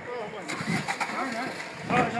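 A car engine running close by, with men's raised voices over it.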